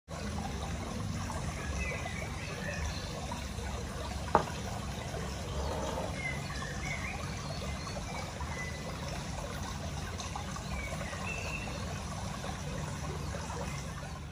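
Steady trickling water, with faint high chirps now and then and a single sharp click about four seconds in.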